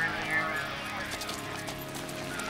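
Indistinct voices calling out over a busy street scene, with scattered sharp clicks and knocks.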